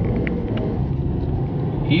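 Steady engine and tyre noise of a car driving along a city street, heard from inside the cabin as a low, even rumble.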